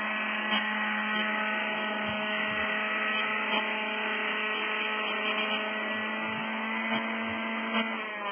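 Radio-controlled model helicopter hovering just above the ground, its motor and rotor making a steady whine at one unchanging pitch, with a few light ticks.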